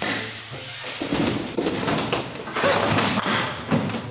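A large plywood sheet being pulled off a wall and coming down onto the floor: a sudden start, then a continuous run of scraping, bangs and clatter.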